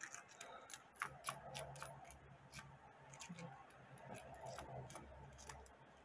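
Faint, irregular clicks of copper Canadian pennies clinking against each other as a roll is spread out by hand on a fabric mat.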